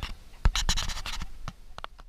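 A quick run of scratchy knocks and rustles right against the microphone, starting about half a second in and thinning out near the end, typical of the camera or its mount being handled.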